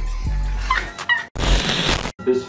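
Bass-heavy background music with some laughter, the music dropping out about a second in. Then comes a short, loud burst of static-like noise, an edit transition effect, which cuts off suddenly.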